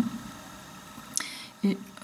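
Mostly quiet room tone in a pause between spoken phrases, with a brief soft hiss just over a second in and a single short word near the end.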